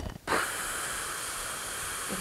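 A steady, high-pitched hiss that starts suddenly and holds an even level for about two and a half seconds.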